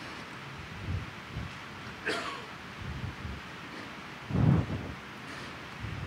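Quiet room noise on a presentation microphone: faint indistinct murmurs and soft knocks, a short falling tone about two seconds in, and a louder muffled sound about four and a half seconds in.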